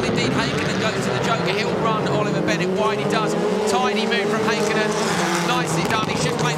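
Several rallycross race cars' engines, Subarus among them, racing as a pack, their pitch falling and rising as they brake for a hairpin and accelerate away.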